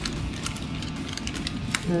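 A plastic drink bottle taken from a shelf of bottles: a run of light clicks and taps about half a second to two seconds in, over a steady low hum.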